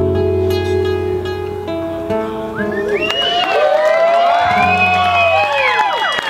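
Nylon-string classical guitar playing the song's closing notes, which are held and ring on. About halfway through, several overlapping rising-and-falling whoops join in over the guitar.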